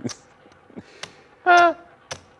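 A single short horn honk about one and a half seconds in: one flat, steady tone lasting about a quarter second that sounds off, as if something is wrong with the horn. A sharp click comes shortly before it.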